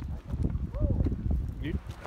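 Footsteps crunching and clattering on loose gravel and rock, in an uneven run of short steps, with a brief voice fragment near the end.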